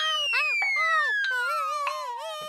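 Cartoon falling sound effect: one long, steadily descending whistle. Under it runs a wavering, up-and-down cry from the falling mouse character.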